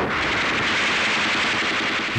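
Machine-gun fire: a continuous, dense rattle of rapid shots.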